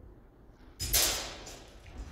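Steel langes messer training blades clashing once, loudly, about a second in, with a short ringing decay, followed by a couple of lighter knocks.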